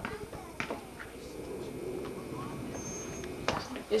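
A rubber ball bouncing on a concrete sidewalk: a couple of short thumps over a low outdoor background with faint distant voices.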